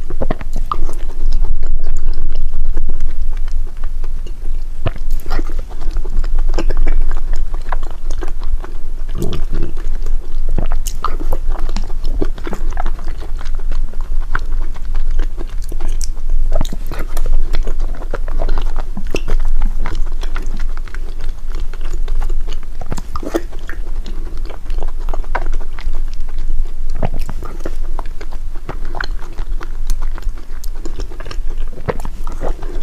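A person chewing soft, sticky glutinous yellow-millet rice balls in brown sugar syrup close to the microphone, with many small mouth clicks and smacks throughout.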